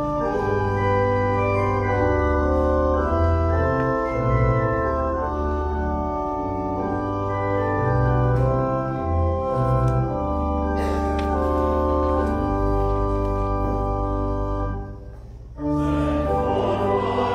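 Church organ playing a hymn introduction: sustained chords over a moving pedal bass line, with a brief break about a second before the end.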